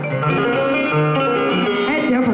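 Live band music led by a plucked string instrument, playing a run of steady held notes.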